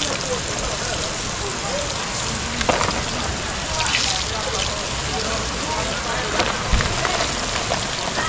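Floured chicken pieces frying in a pan of hot oil over a wood fire: a steady sizzle that flares briefly about four seconds in as another floured piece is dropped into the oil.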